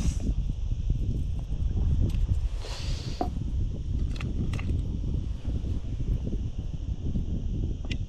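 Steady low wind rumble on the microphone, with a brief rustle and a few small plastic clicks as a plastic lure box is handled and a lure is tied on.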